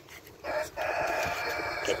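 A rooster crowing once: a short opening note, then a long held call.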